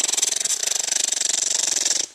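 Machine-gun sound effect: a fast, even stream of automatic gunfire that runs at a steady level and cuts off suddenly at the end.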